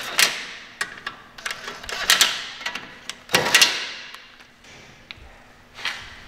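Sharp metallic clicks and knocks of tools working on bolts under a lifted car, as they are tightened with a torque wrench set to 100 Nm. The loudest come in clusters about two and three and a half seconds in.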